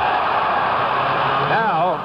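Arena crowd cheering loudly as the home team's basket goes in, heard through the narrow, dull sound of an old TV broadcast. A voice comes back in about a second and a half in.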